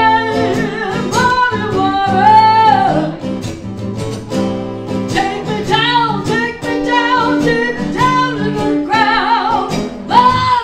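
A woman singing, with wavering held notes, over two or three strummed acoustic guitars.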